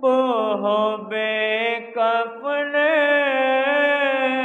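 A man's solo voice reciting a nauha, an Urdu mourning lament, unaccompanied into a microphone, in long drawn-out melodic phrases broken by a few short pauses for breath.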